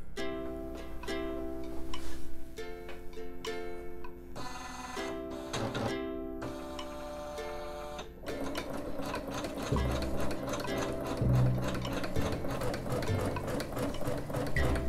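Background music. About eight seconds in, a Husqvarna Viking Designer Jade 35 sewing and embroidery machine starts stitching at a rapid, even rate, sewing a basting square around the hooped fabric under foot-pedal control.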